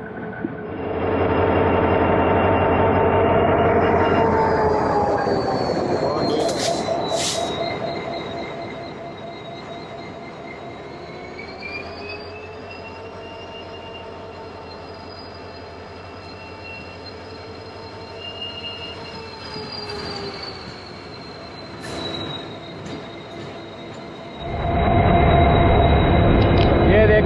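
Cargo train moving slowly, heard from beside its locomotive: the engine runs with a dense pitched drone while the wheels give a steady high squeal. It is loud for the first several seconds, with two sharp clicks about seven seconds in, then quieter with the squeal held, and loud again near the end.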